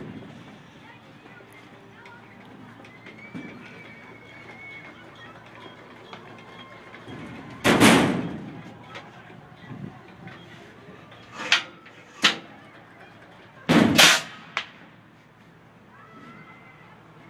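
Compressed-air apple cannon firing twice, about six seconds apart, each shot a sharp blast that dies away within half a second. Two lighter sharp knocks come between the shots.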